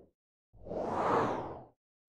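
A single whoosh sound effect for a logo transition, swelling in about half a second in and fading away within a second.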